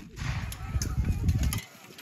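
A medieval black-powder handgun fired right at the start, a single sharp crack, followed by about a second and a half of low rumble that then quietens.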